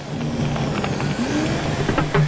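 Vehicle driving over a rough unpaved mountain track, with steady engine and road noise.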